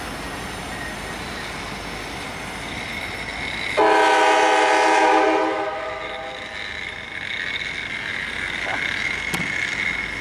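Freight train of empty bulkhead flatcars rolling past with a steady rumble and a thin high whine. About four seconds in, a train horn blows once, a chord of several notes lasting about a second and a half, then fades.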